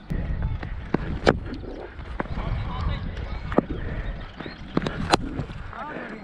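Low rumbling wind and movement noise on a helmet-mounted camera, broken by a few sharp knocks, the loudest about a second in and two close together near the end. Faint distant voices run underneath.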